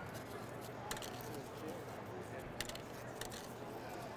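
Steady background murmur of a large hall with faint distant voices, and a few light clicks about a second in and near the end.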